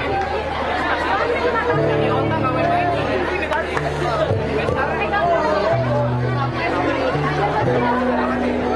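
A live band with electric guitars playing, with bass notes coming in about two seconds in and changing every second or so, and a crowd talking over the music.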